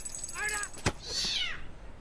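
A cat meowing once, then a sharp thump a little under a second in, followed by a high yowl that falls steeply in pitch.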